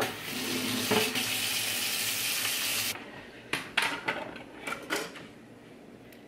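Kitchen tap running for about three seconds, then shut off abruptly. Several sharp knocks follow as a plastic cutting board is set down on the countertop.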